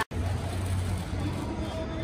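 City street background: a steady low hum of road traffic, with faint voices of a crowd mixed in.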